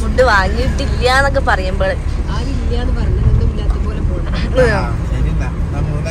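Steady low rumble of a moving road vehicle, with people talking in short bursts over it.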